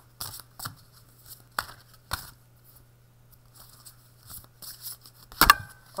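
Oracle cards being handled and shuffled: short scattered rustles and flicks of card stock, with a sharp louder snap of the cards near the end.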